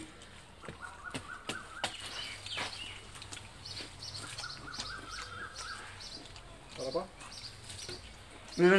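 Birds singing, a warbling phrase heard twice, over faint clicks and crunches from coconut shells and flesh being handled; a short vocal sound near the end.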